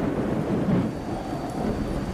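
Low rumble of thunder with rain, a steady noisy sound with no tune in it.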